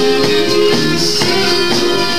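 Small live band playing an instrumental passage: drum kit, bass guitar and keyboard together, with a steady beat and cymbals on top.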